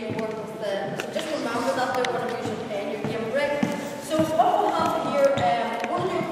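Balls bouncing on a wooden sports-hall floor, a few scattered thumps, under people's voices talking in the hall.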